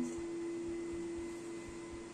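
Steady single-pitched hum of a vacuum cleaner running on the floor below, heard through the building.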